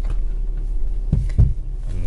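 Steady low rumble inside a car, with two dull thumps a little past a second in.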